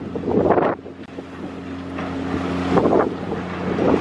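Steady low engine hum from a docked ferry, running at idle, with irregular gusts of wind buffeting the microphone.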